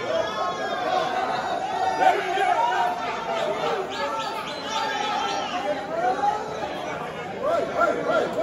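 Several voices talking over one another: indistinct chatter, with no one voice clear.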